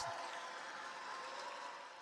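Faint steady hiss of recording background noise, slowly fading.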